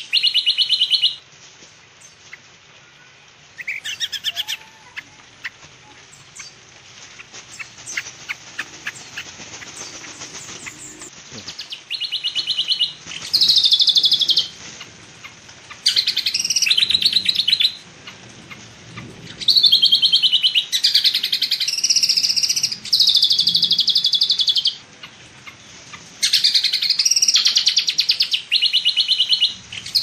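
A songbird repeatedly giving high, buzzy trilling calls, each lasting one to two seconds. There is one near the start and a single short call about four seconds in. The calls then come in quick succession from about twelve seconds on. Between them, in the first half, there are scattered light clicks and rustles of handling.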